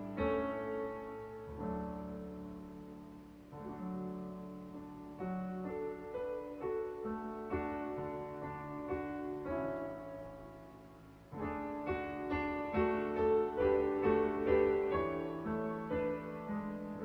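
A hymn played in full chords on a digital piano, chord changing about every second. One phrase fades out and a louder phrase begins about eleven seconds in.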